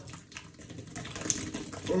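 Beer poured from a can in a thin stream into a stainless steel sink, a faint splashing patter with small ticks that grows louder after the first half-second.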